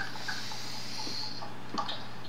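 A person breathing out, a soft hiss lasting about a second, over a steady low electrical hum, with a few faint clicks near the end.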